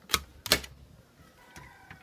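Two sharp knocks about a third of a second apart, followed by a few lighter clicks and a faint, thin, slightly falling tone in the second half.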